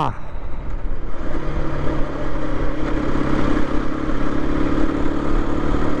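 Aprilia RS 125's single-cylinder four-stroke engine running at a steady city cruise, mixed with wind rumble on the microphone. A steady engine hum settles in about a second and a half in.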